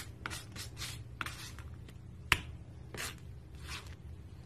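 Palette knife scraping and smearing thick paint across a hard surface: a run of short swishes, with one sharp tap a little past halfway.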